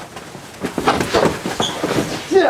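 A jumble of bumps, knocks and rustling as a large puppet knocks into things and falls over, starting about half a second in.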